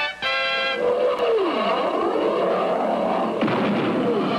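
A held musical chord that cuts off under a second in, then a jet-like whooshing zoom whose pitch falls, going on as a steady rush: a cartoon sound effect for a flying squirrel streaking across the sky.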